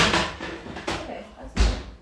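Kitchen cookware and oven handling: a sharp knock at the start, another just under a second in, and a heavier thud about one and a half seconds in.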